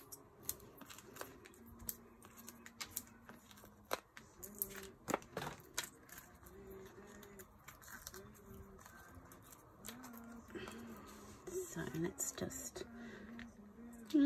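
Faint scattered clicks, taps and rustles of paper crafting: foam adhesive dimensionals being peeled from their backing sheet and a die-cut card panel pressed down onto a card front.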